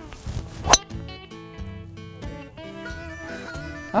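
Background guitar music, with one sharp crack of a driver striking a golf ball off the tee about three-quarters of a second in, louder than the music.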